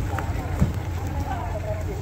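Audi sedan's engine idling with a low steady rumble, its exhaust running, amid background voices; a brief thump just over half a second in.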